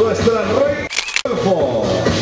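A voice over loud background music, broken about a second in by a brief dropout with a sharp, click-like sound.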